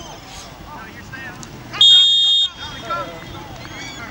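A single loud, steady, high-pitched referee's whistle blast lasting under a second, about two seconds in, over shouting from players and the sideline.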